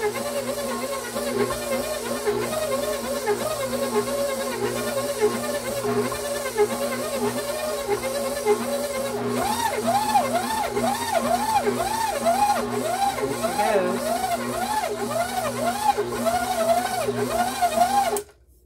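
Noisy KitchenAid stand mixer kneading bread dough with its dough hook: a steady motor hum whose pitch rises and falls in a regular rhythm, about one and a half to two times a second, as the hook drags the dough around the bowl. The rising-and-falling whine gets louder about halfway through.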